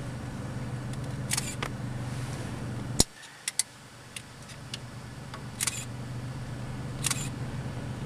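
Camera shutter clicking in short bursts, several times, over a steady low hum like an idling vehicle engine; the hum drops away after a sharp click about three seconds in and slowly builds back.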